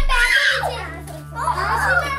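Young children talking and calling out to each other in high voices, in two bursts, over a steady low hum.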